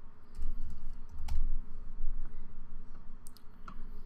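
Computer keyboard typing: a handful of scattered key clicks as a number is entered, with low thuds through the first second and a half.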